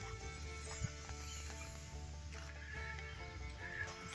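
Quiet background music, soft held notes changing pitch every so often.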